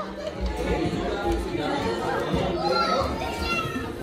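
Young children's voices and adult chatter overlapping in a busy playroom, with higher children's voices rising above the babble in the second half.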